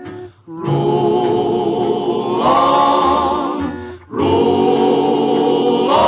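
A vocal group singing a Western song in close harmony, holding long chords with vibrato. The phrases break briefly about half a second in and again around four seconds in.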